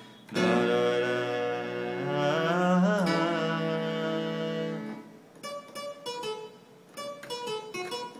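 Keyboard's distortion-guitar voice playing sustained chords, the notes bending up and back down about two and a half seconds in. From about five seconds in it plays short single notes one after another.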